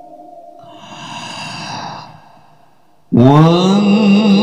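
Qur'anic recitation (tilawah) by a qari through a microphone and PA. A held note fades, then a loud breath is drawn into the microphone and a short pause follows. About three seconds in the voice comes in loudly, gliding up into a long held note.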